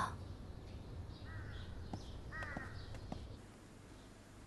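Crows cawing faintly, two calls about a second apart, over a low steady background hum.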